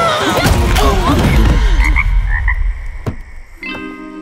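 A man cries out in a strained, wavering voice over a heavy low rumble, with a few short high chirps mixed in. About three seconds in there is a single sharp click, and a chiming jingle starts just before the end.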